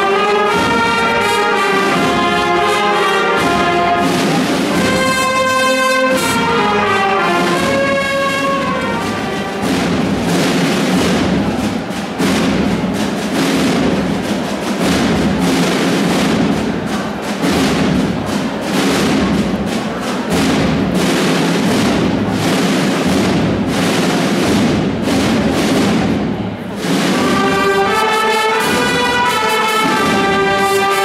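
Holy Week brass band of trumpets, trombones and saxophones with drums playing a march. Clear melody at first, a fuller passage with busy drumming from about nine seconds in, a brief drop near the end, then the melody returns.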